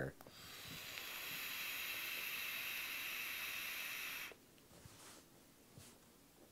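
Joyetech Cuboid Mini vape with a 0.25-ohm stainless steel notch coil, airflow fully open, taking a long draw: a steady hiss of air drawn through the atomizer as the coil fires. It builds over the first second and cuts off suddenly after about four seconds.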